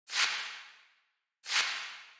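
Synthesizer noise hits: two bursts of hissing noise, each swelling quickly and fading away over about a second, the first at the start and the second about a second and a half in.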